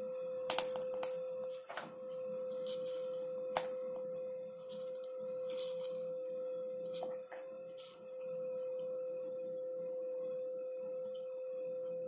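A steady, even hum on one pitch runs throughout, with a few sharp clicks and taps from a small plastic dye bottle being squeezed and handled over a plastic tub, the clearest near the start and one about three and a half seconds in.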